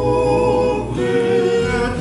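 A group of men singing a Tongan song together in harmony, holding long notes, with a guitar strummed underneath.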